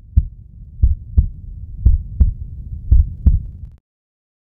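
Heartbeat sound effect for a logo intro: deep double thumps, lub-dub, about one pair a second over a low hum, stopping shortly before the end.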